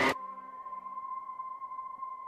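A single steady electronic tone, held unchanged for about two seconds, which starts just as the preceding speech and music cut off.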